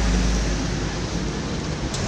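Steady outdoor background noise: a low rumble under an even hiss, with no distinct event standing out.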